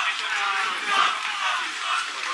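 Group of men's voices shouting and chattering over one another, footballers celebrating a win on the pitch.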